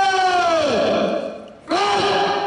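A man's drawn-out shouted parade command, held on one pitch. The first call falls away just under a second in, and a second call swoops up and starts near the end. This is the ceremony commander ordering the salute.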